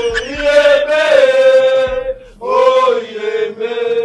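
Male voices chanting in long, held, steady notes, with a short break about two seconds in.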